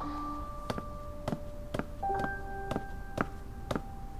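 Soft background score: held keyboard notes changing every couple of seconds, over a light tick about twice a second.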